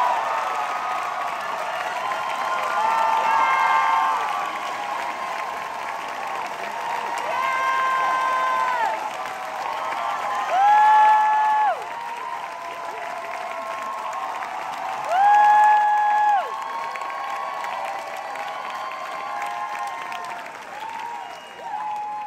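Theatre audience and cast applauding and cheering, with several long high-pitched screams over the clapping, the loudest about eleven and fifteen seconds in.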